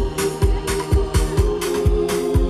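Amplified dance music played loud over loudspeakers: a steady drum beat with sharp hits about twice a second, over held keyboard or organ chords.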